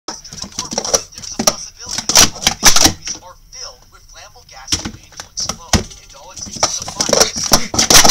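Plastic sport-stacking cups rapidly stacked and unstacked in a 3-6-3 stack on a stack mat: a fast, dense run of sharp plastic clacks, broken by a short pause about three seconds in before the clacking starts again.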